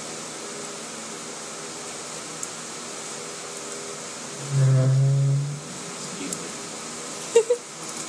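Electric fan running steadily. About halfway through, a brief low pitched sound lasts about a second, and near the end there are two short sharp taps.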